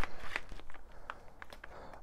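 Plastic bag of potting soil being cut and pulled open by hand, rustling and crinkling with a few irregular sharp clicks.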